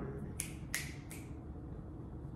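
Three finger snaps in quick succession, the first about half a second in, each a sharp, bright click.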